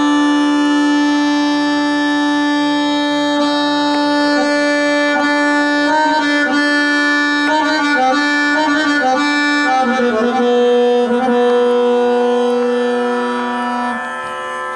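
Harmonium playing a slow aalap in raga Ahir Bhairav: a long sustained low note under a slow, unhurried melodic line, the low note moving down to a lower one about ten seconds in.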